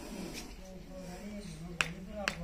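Low, indistinct voices with one sharp click near the end.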